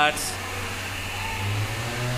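A steady low mechanical hum under a faint noisy haze, stepping up slightly in pitch about one and a half seconds in.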